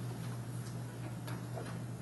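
Steady low hum, with a few faint, irregular clicks.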